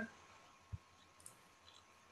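Near silence, broken by one faint short low knock under a second in and a fainter tick a little later.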